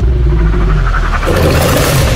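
Trailer sound design: a loud, deep rumble that hits at once and holds, with a rushing noise swell building over it in the second half.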